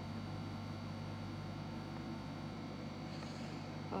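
Room tone: a steady low electrical hum under faint background noise.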